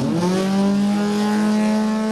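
Racing powerboat engine at speed: its pitch climbs as it opens up, then holds a steady high note.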